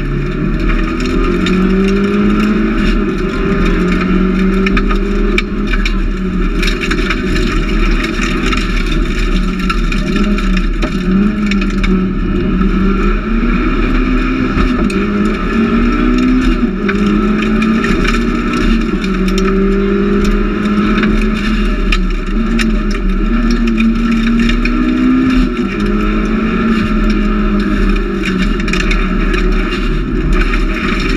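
Mitsubishi Lancer Evolution IV RS's turbocharged four-cylinder engine driven hard from inside the cabin, its pitch repeatedly climbing and then dropping as it is worked through the gears, over steady road and tyre noise.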